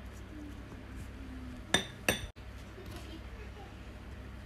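Two ringing clinks of kitchenware, about a third of a second apart, a little under two seconds in, over a low steady background hiss.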